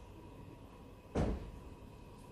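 A single short, dull thump about a second in, over a faint steady tone.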